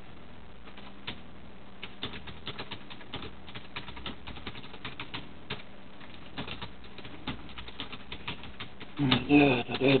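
Typing on a computer keyboard: quick, irregular key clicks, several a second, over a faint steady hum.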